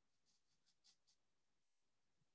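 Near silence: a pause in the talk.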